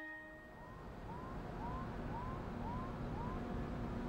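Low rumbling industrial noise swells up, with a run of six short rising squeaks about twice a second and a faint steady hum underneath.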